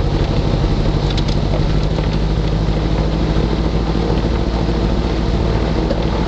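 Sparrowhawk gyroplane's engine and pusher propeller running steadily at low power while taxiing, heard from inside the open cockpit as an even, unbroken drone.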